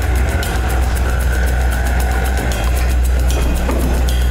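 Tense background score: a deep, sustained bass drone under fast, evenly spaced ticking percussion.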